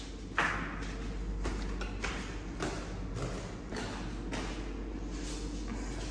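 Footsteps climbing tiled stairs, about two steps a second, each a short thud, over a low steady hum.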